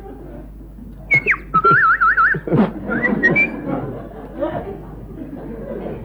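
A person whistling: a quick falling whistle about a second in, then a warbling whistle, then a few short rising whistle notes, over a murmur of voices.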